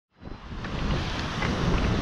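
Wind buffeting the microphone over the wash of surf breaking on rocks, coming in from silence just after the start and holding steady.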